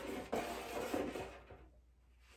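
Magnetic stud finder rubbed across a painted wall: a scratchy sliding noise with a sharp click near the start, dying away about one and a half seconds in.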